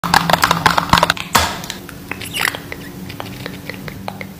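Long fingernails tapping rapidly on a clear plastic tub lid, a dense flurry of taps for the first second or so, then a short scrape and scattered lighter taps.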